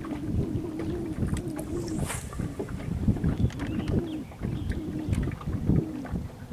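Bow-mounted electric trolling motor humming in short on-and-off spurts, its pitch wavering, with wind rumbling on the microphone and scattered small clicks.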